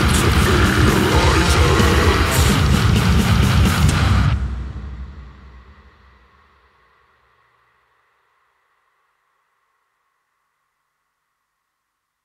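Death metal band playing at full volume until about four seconds in, when it stops abruptly on the song's final chord. The chord rings out, a couple of sustained notes lingering as it fades to silence.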